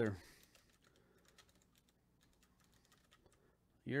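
Faint, irregular typing and clicking on a computer keyboard.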